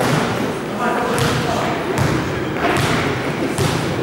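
Basketball bounced on a hardwood gym floor: a few slow, separate bounces under a second apart, ringing in a large hall, with people talking.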